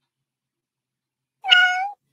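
A single cat meow of about half a second near the end, from the sprint timer app, sounding as the work countdown runs out and the timer switches to break.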